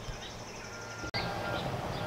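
Outdoor background with a steady low rumble and a few faint bird chirps. The sound drops out briefly about a second in, then comes back slightly louder.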